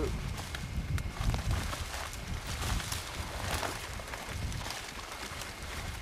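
Brush rustling and twigs cracking as a person crawls out through briar-covered tree fall, over a low uneven rumble of camera handling.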